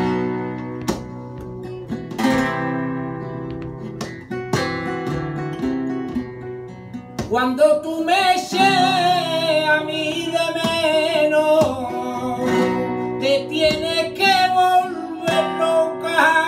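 Flamenco guitar playing bulerías por soleá, with strummed chords and sharp rasgueado strokes. About seven and a half seconds in, a male flamenco singer comes in with a wavering, ornamented line over the guitar.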